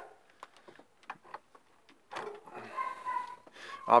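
Light metallic clicks of a socket being handled and fitted onto a British Seagull outboard's flywheel nut. About two seconds in, a faint high whine begins.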